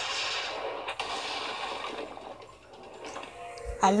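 Cartoon soundtrack playing from a television: music with voices, dropping quieter after about two and a half seconds.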